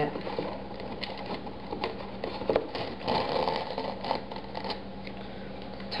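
Plastic soda bottle and string being handled as the string is pulled to length: a run of light, irregular clicks and rustles.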